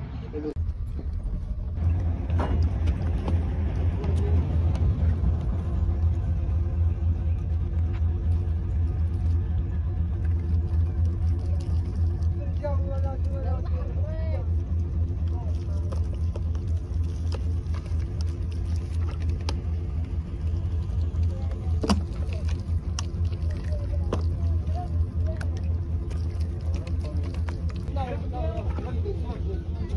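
Steady low rumble of a vehicle engine running throughout, with brief voices about halfway through.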